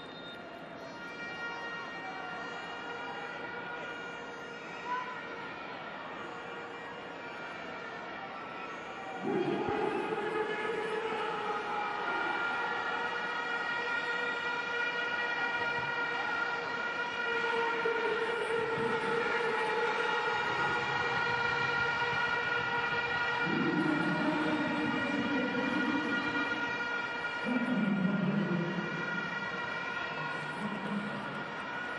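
Horns blowing in a stadium crowd: a steady high horn note holds throughout, and louder, lower horn blasts come in about nine seconds in and several more times, overlapping.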